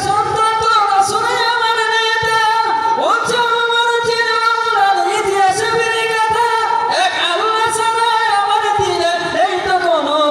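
A man singing a Bengali Islamic gazal unaccompanied into a microphone, holding long, drawn-out notes joined by short upward glides.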